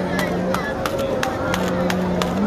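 Crowded, echoing hall sound with a held low tone that steps slightly in pitch, broken by a scattered run of sharp clicks and clacks.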